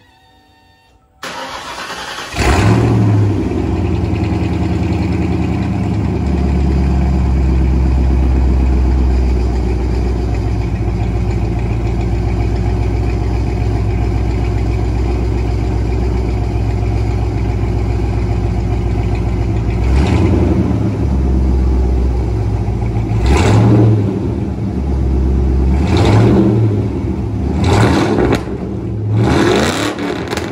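1995 Mustang GT's 5.0-litre V8 with aftermarket headers cranking and starting about two seconds in, then running loudly at a steady idle. In the last ten seconds it is revved in several short throttle blips.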